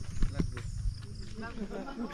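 Footsteps crunching irregularly on a gravel path, with faint voices talking in the background.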